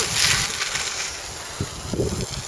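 Cyclocross bike passing close by, its tyres rolling on the gravel path: a hiss loudest in the first half second, then fading, with wind rumbling on the microphone.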